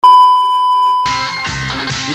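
Steady high-pitched test-tone beep, the reference tone that goes with TV colour bars, held for about a second. Then music takes over.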